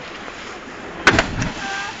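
A sudden loud knock about a second in, followed by one or two quicker, fainter knocks within half a second.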